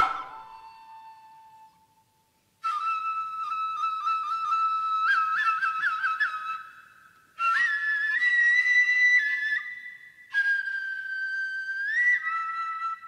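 Noh flute (nohkan) playing three shrill, high held phrases with short breaks between them, the first broken by a quick run of trills. A sharp hit at the very start dies away over about two seconds before the flute comes in.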